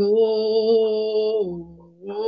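A voice singing unaccompanied, holding one long note that steps down slightly in pitch and fades out near the end.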